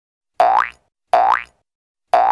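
Cartoon 'boing' sound effect: a short pitched sound that rises quickly, played twice about three-quarters of a second apart.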